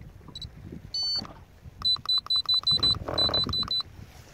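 Key beeps from a Lowrance HDS-5 Gen2 chartplotter as its buttons are pressed: a short high beep, a longer beep about a second in, then two fast runs of short beeps, about eight a second.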